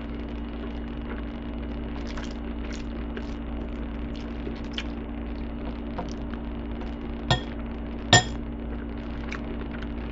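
Metal fork clinking against a ceramic bowl of macaroni and cheese, with faint scattered scrapes and two sharper clinks under a second apart near the end. A steady low hum runs underneath.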